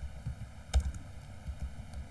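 A few keystrokes on a computer keyboard, the loudest key press about three quarters of a second in.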